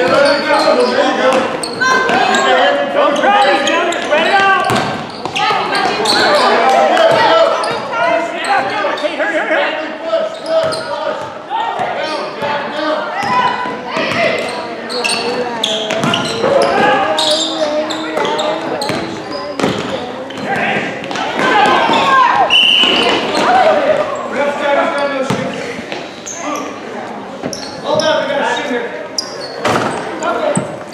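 Indoor basketball game in a gym: many voices shouting and talking at once, with a basketball bouncing on the hardwood floor, all echoing in the hall. A brief high tone sounds about three-quarters of the way through.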